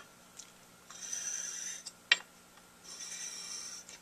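Metal saxophone mouthpiece rubbed across sandpaper on a glass plate: two sanding strokes of about a second each, flattening the mouthpiece table, with a sharp click between them.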